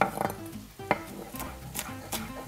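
Chef's knife chopping radicchio on a wooden cutting board: several sharp, irregular knocks of the blade on the board, over soft background music.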